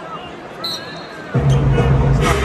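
Arena crowd murmur with a basketball being dribbled on the hardwood court, then the arena's PA music with a heavy bass line cuts in loudly about a second and a half in.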